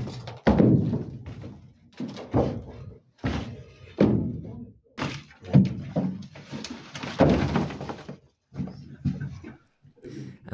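Heavy thuds of soft marl (limestone) blocks being knocked loose and dropping onto the floor of a marl cave as the last of a wall is broken through, each one echoing in the chamber. A noisier stretch of crumbling, sliding rubble comes around seven seconds in.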